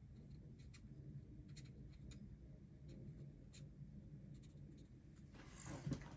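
Faint scratching of a marker writing by hand on the bare machined valve relief of a 92 mm aluminium piston, with small ticks scattered through it over a low steady hum.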